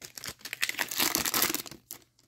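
Hockey card pack wrapper crinkling and tearing as it is ripped open by hand, a dense crackle that cuts off suddenly near the end.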